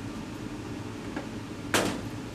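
A single sharp plastic clack near the end as the hinged lid of a pipette tip box is snapped shut. Under it runs the steady hum of a biosafety cabinet's blower.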